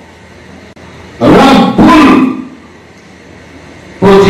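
A man's voice in one loud, drawn-out shout of about a second, with a brief break in the middle, set between quiet pauses.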